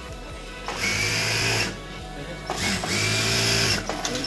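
Industrial lockstitch sewing machine stitching a hem along a pillowcase edge, running in two short bursts of about a second each, each starting with a brief rising whine as the motor speeds up. Background music plays underneath.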